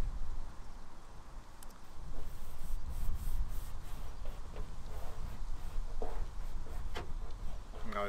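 Soft rustling and a few light taps of paper transfer tape as a small vinyl petal decal is peeled from its backing and rubbed onto a car door by hand, over a low steady rumble.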